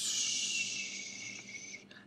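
A person's drawn-out hissing breath through the teeth, a steady high hiss that fades over nearly two seconds and stops just before the end.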